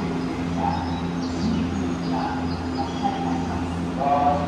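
Steady low hum of a stationary Odakyu Romancecar's onboard electrical equipment at the platform, with faint snatches of a voice and a few brief high chirps about a second in.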